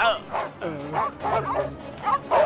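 Dogs barking in a quick series of short barks, cartoon dog voices.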